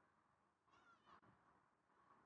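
Near silence, with one faint, brief high-pitched warbling sound a little under a second in.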